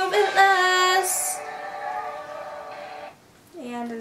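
A young woman singing a held note that breaks off about a second in with a short breathy hiss, then fades away over the next two seconds. After a moment of near silence she starts speaking near the end.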